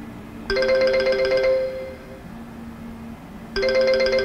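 Smartphone ringtone for an incoming call, a chiming melody. It starts about half a second in, fades out after a second and a half, and starts again near the end. The call is ringing through to a newly bought SIM, a sign that the SIM is active.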